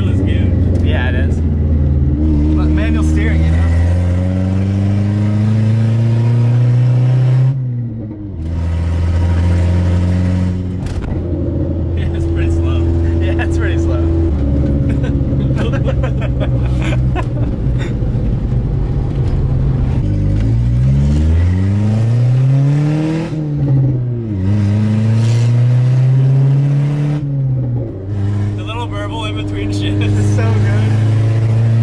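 Toyota Corolla TE72 wagon's engine heard from inside the cabin while driving, revving up through the gears: its pitch climbs under acceleration and falls back at each gear change, several times over.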